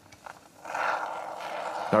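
Aerosol can of Polycell Expanding Foam Polyfiller hissing steadily as foam is sprayed through its thin applicator straw into a wall cavity. The hiss starts about half a second in.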